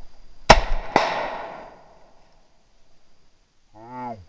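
Two shotgun shots about half a second apart, the first the louder, each echoing away through the woods over about a second.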